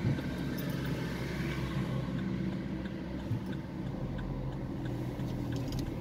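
Steady engine and road hum of a car, heard from inside its cabin.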